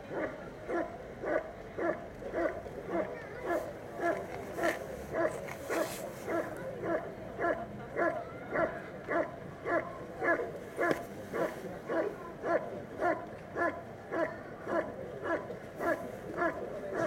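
German shepherd barking at the sleeve-wearing helper in protection work. The barks are short and evenly spaced, close to two a second, and go on without a break.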